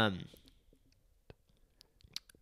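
A man's drawn-out 'um' with a falling pitch, then a pause broken by a few faint, sharp clicks.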